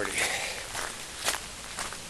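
A person's footsteps walking outdoors, with a short breath drawn in near the start.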